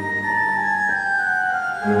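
Classical music: a solo organ line with a flute-like tone falls step by step over a thinned accompaniment. The low strings and fuller ensemble come back in near the end.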